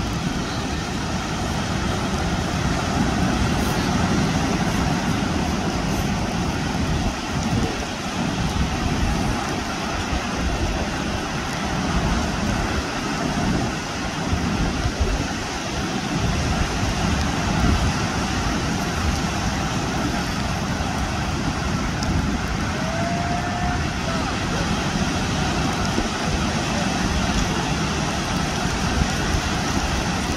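Steady wash of surf breaking on the shore, with indistinct voices in the background.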